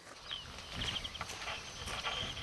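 Faint outdoor ambience: short high-pitched chirps in quick runs, about a second in and again near the end, over a low hiss, with soft thuds that fit footsteps.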